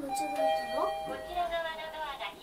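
Mitsubishi AXIEZ elevator's arrival chime: two electronic tones, a higher one and then a lower one just after it, ringing for about a second as the car arrives at its floor. A voice is heard over and after it.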